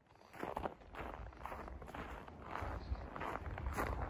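Footsteps walking at a steady pace, about two steps a second, fading in and growing louder.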